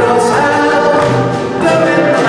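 A live 1930s–40s-style dance band playing, with sustained chords that change about every second.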